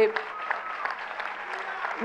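Audience applauding in a pause of the speech, an even spread of clapping with faint voices mixed in.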